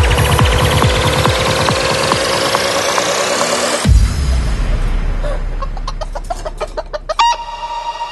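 Psytrance track: a regular kick beat under a rising sweep that cuts out abruptly about four seconds in at a break, leaving a deep bass tone. Over it come sampled chicken clucks and, near the end, a long held rooster crow.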